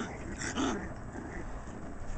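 Five-week-old Shiba Inu puppy giving a short vocal call during play, about half a second in.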